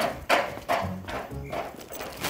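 High-heeled shoes clicking on paved ground at a walking pace, about two steps a second. Background music with low sustained tones comes in about a second in.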